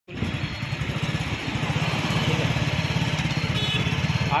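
Vehicle engine running steadily with a fast low pulsing, amid road traffic noise. The sound cuts in abruptly at the start.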